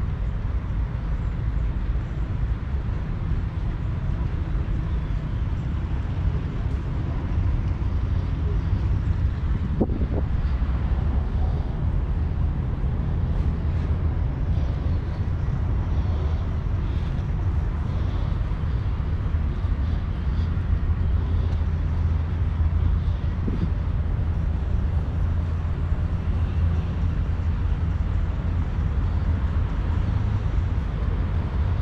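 Steady low outdoor rumble, even in level throughout, with a few faint, brief higher sounds over it in the middle.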